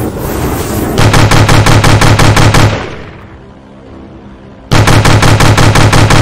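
Two loud bursts of rapid automatic gunfire, about eight shots a second. The first starts about a second in and lasts under two seconds, and the second starts near the end.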